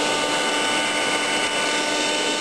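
Eureka vacuum cleaner running steadily: an even rush of air with a steady high motor whine.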